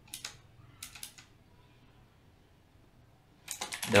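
A few quick keystrokes on a computer keyboard in about the first second, typing words into a document, then quiet. A man's voice starts just before the end.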